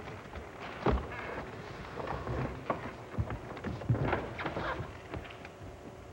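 Irregular scattered knocks, clicks and rustles, with the loudest knocks about a second in and near four seconds. It sounds like handling and shuffling noise from a large seated group on a stage.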